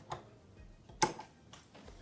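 Two sharp clicks: a light one at the start and a louder one about a second in.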